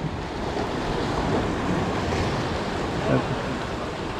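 Ocean surf washing against the rocks of a jetty: a steady rush of water that swells a little between about one and two seconds in.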